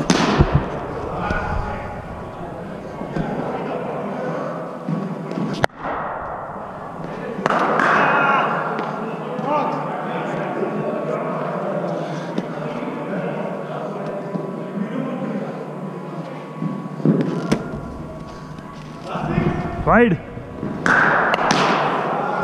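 Occasional sharp knocks of a cricket ball struck with a bat and hitting the floor and nets, the first right at the start, over steady background chatter of voices.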